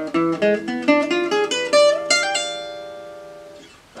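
Selmer-style gypsy jazz guitar with a small oval soundhole playing a fast single-note lick over E7, many quickly picked notes for about two seconds, then a last note left to ring and fade away.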